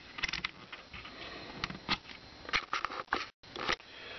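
Handling clicks and rustles from a Fluke 17B multimeter: its rotary selector switch being turned through its detents and its thermocouple wires being moved. There is a short gap of silence a little past three seconds in.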